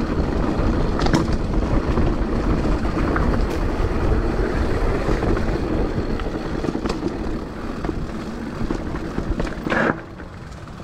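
Mountain bike rolling fast over a dirt singletrack: tyre rumble and the rattle of the bike over bumps, with wind buffeting the microphone and scattered sharp clicks. The noise drops away abruptly near the end.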